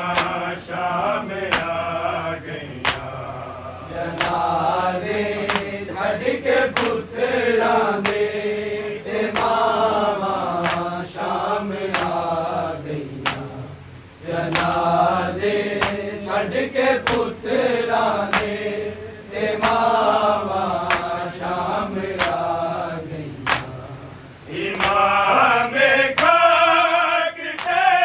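A group of men chanting a Punjabi noha (mourning lament) together, with sharp claps or strikes recurring at a rough, even beat under the voices, typical of matam, hands beating the chest in time with the lament.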